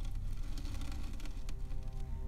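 Quiet background music with held, steady tones that come in about halfway through.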